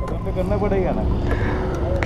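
Steady low rumble of a motor vehicle, with faint voices in the background.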